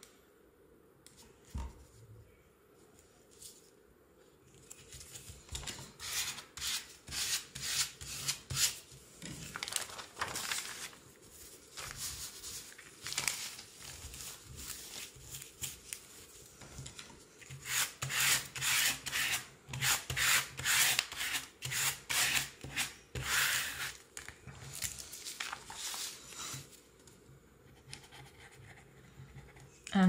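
A cloth and hand rubbing over freshly glued paper layers to press them flat: runs of quick rough strokes starting about five seconds in, with short pauses, easing off near the end.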